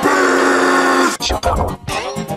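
Heavily effects-processed, music-like audio: a held chord-like tone for about the first second, then a rapid string of sharp clicks and hits.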